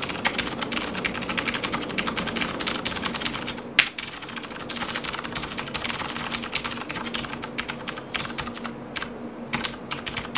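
Fast touch-typing on a Das Keyboard Model S Professional mechanical keyboard: a dense, unbroken stream of key clicks, with one harder key strike about four seconds in.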